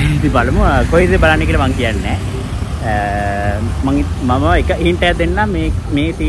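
A man talking, with one drawn-out vowel held steady for over half a second about three seconds in, over a steady low rumble of road traffic.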